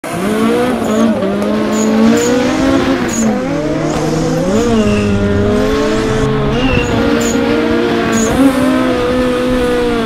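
Engine sound, a steady drone whose pitch rises briefly several times as if the throttle is blipped, under short high tyre squeaks from RC drift cars sliding.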